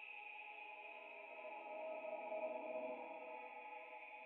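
Faint ambient synthesizer drone from a documentary score: a soft, sustained chord of steady tones that swells a little in the middle.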